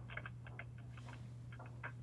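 Faint computer keyboard keys tapped in a quick, irregular run of about ten clicks as a login is typed in, over a steady low electrical hum.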